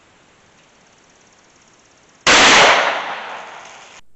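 A single shot from a Howa 1500 bolt-action rifle in .308 firing a hot-loaded 110-grain Hornady V-Max round, about two seconds in: a sharp, very loud report that trails off over about a second.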